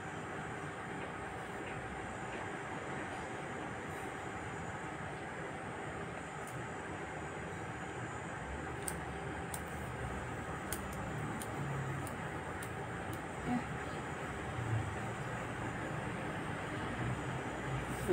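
Steady rumbling background noise with a faint constant hum, and a few faint sharp clicks in the second half.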